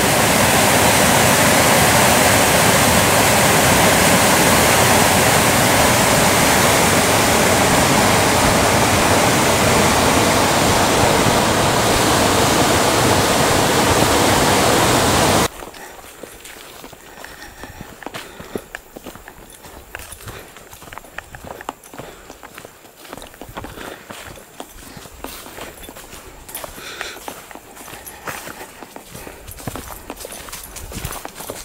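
A loud, steady rush of whitewater rapids, which cuts off suddenly about halfway through. After it come much quieter footsteps on a dry, leaf-covered dirt trail, an irregular run of soft steps and leaf rustles.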